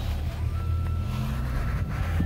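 Low, steady hum of a car's engine and running gear heard from inside the cabin.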